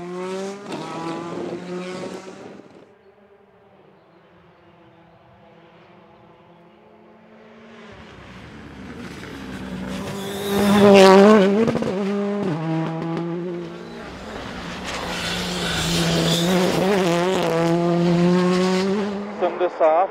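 Rally cars at speed on a special stage. One engine fades away in the first few seconds. After a quieter spell another car approaches and passes, loudest about eleven seconds in, its pitch stepping with quick gear changes. Then a further pass builds and fades near the end.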